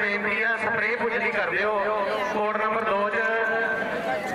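A man speaking continuously, with a steady low hum beneath the voice.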